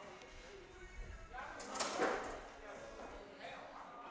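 Quiet gym room tone, with a faint, short voice sound about two seconds in.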